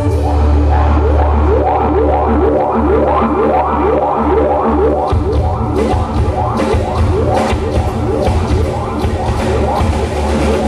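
Live progressive rock band playing: keyboards repeat quick rising runs over a deep sustained bass. Drums come in about halfway through.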